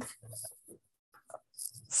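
A pause in a woman's speech over a video call: the tail of a drawn-out 'um', then faint scattered high-pitched chirps and small ticks, and a breath in just before she speaks again.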